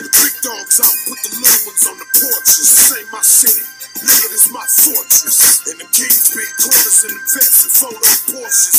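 Hip hop track with a male voice rapping over a drum beat.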